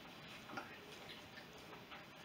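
A few faint, short clicks over quiet room tone.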